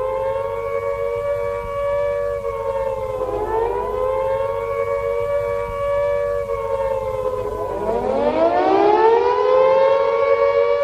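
Air-raid siren wailing with two close tones. Its pitch holds high, sags and climbs again about three and a half seconds in, then sags and climbs again near the end.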